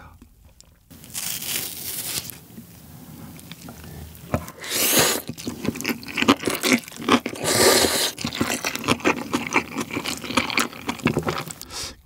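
Close-miked eating sounds: a brief scrape of chopsticks on kimchi about a second in, then loud wet slurping of Chapagetti black-bean instant noodles with crunching and chewing of spicy napa cabbage kimchi, in two longer slurps and many short smacks and crunches.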